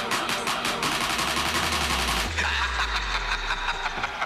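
Background electronic music with a fast, steady beat. A deep bass tone comes in about a second in and drops lower about halfway through, where the high percussion thins out.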